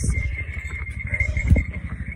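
A helicopter's rotor giving a low, rhythmic pulsing rumble, with a thin steady high whine throughout and a single knock about one and a half seconds in.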